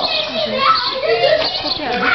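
Overlapping chatter of several young voices talking at once.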